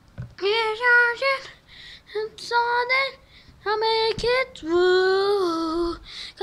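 A child singing a melody unaccompanied in four short phrases with brief breaks between them, the last a long held note.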